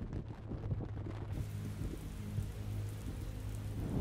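Steady rain with low rumbling thunder, a storm sound effect; the rain's hiss fills out in the higher range about a second in.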